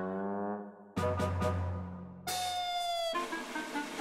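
Playful outro jingle music: a phrase whose notes glide upward, a sharp new phrase about a second in, then a long held note that sinks slightly and breaks off near the end.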